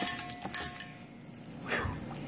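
Brussels sprouts being tossed by hand in a stainless steel mixing bowl, knocking against the metal: a couple of sharp clinks, the first leaving a brief ringing tone from the bowl.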